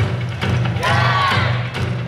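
Recorded yosakoi dance music playing loudly, with a steady percussive beat a little over twice a second over a low bass line, and a short vocal phrase about a second in.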